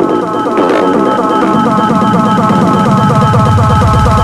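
Electronic background music with a fast drum roll that builds in loudness.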